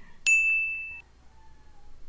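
A single high-pitched ding sound effect: a sharp strike about a quarter second in, ringing as one steady tone for under a second before cutting off.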